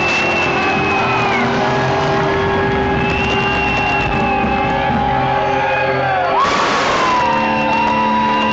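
Live rock band playing loud, with electric guitars holding long notes and a crash about six and a half seconds in.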